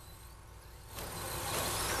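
Electric short-course RC trucks running on a dirt track: faint motor and tyre noise, quiet at first and growing louder from about halfway through.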